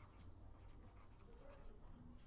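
Faint scratching of a stylus writing on a tablet, over a low steady hum.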